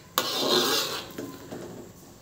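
A spatula stirring a tofu and coconut-milk curry in an aluminium wok: a noisy stirring sound that starts suddenly and fades away within about a second and a half.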